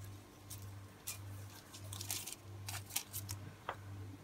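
Thin metallic transfer nail foil crinkling in a few faint, short crackles as it is handled and laid flat on a mat, over a faint low hum.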